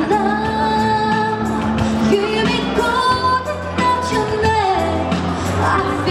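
A woman singing a slow vocal line of long held notes with vibrato and gliding phrases, accompanied by a grand piano.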